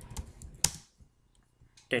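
A handful of keystrokes on a computer keyboard, clicking mostly in the first second, with the loudest click about halfway in.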